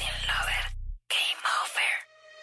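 Dance music stops about a second in, and after a brief silence a voice whispers a few short words.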